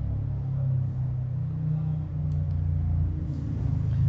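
Steady low background hum, with a faint click or two about halfway through.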